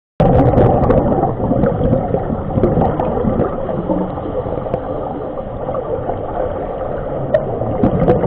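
Underwater sound of scuba divers breathing through their regulators: a continuous, muffled bubbling and rumbling of exhaled air, with a few faint clicks.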